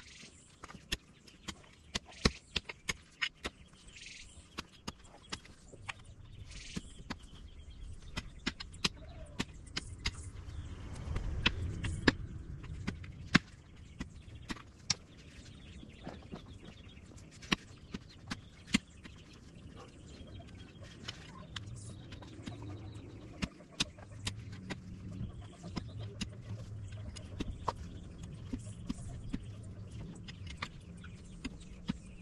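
A long-handled digging tool jabbed into rocky soil to dig a post hole: irregular sharp strikes and scrapes as the blade hits stones and dirt, about one or two a second, the loudest around two and twelve seconds in. A low rumble rises under the strikes in the middle and again later.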